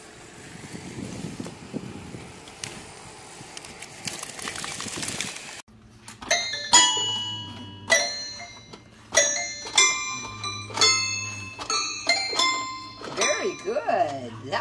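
Toy piano keys pressed by a bulldog puppy's paws, plinking out random single notes and clusters, one or two a second, each ringing briefly. Before that, a few seconds of rough noise, then a sudden cut.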